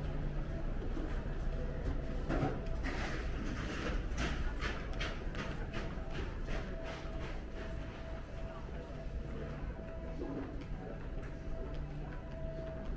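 Footsteps clicking on a hard floor, about three a second, starting about two seconds in and fading out around the middle, over a steady murmur of voices and a low hum.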